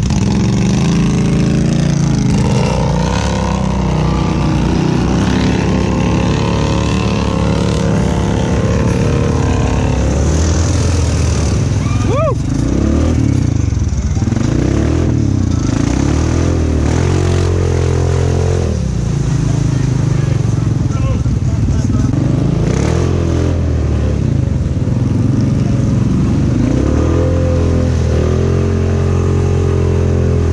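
2016 Honda Rubicon ATV's single-cylinder engine running close up as it rides through mud, its pitch rising and falling over and over as the throttle is worked.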